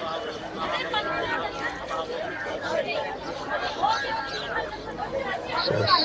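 Background chatter of several people talking at once, no one voice standing out.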